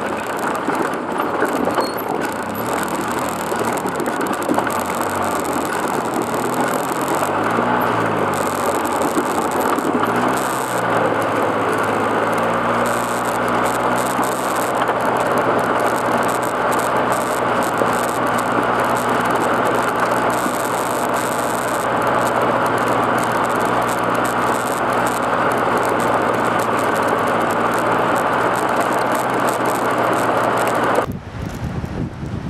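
ATV engine running on a rough gravel mountain road, its pitch rising and falling twice, about eight and ten seconds in, then holding steady, over continuous road and wind noise.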